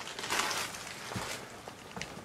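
A person walking: soft footsteps and rustling, with a brief hiss of movement near the start and a few faint knocks.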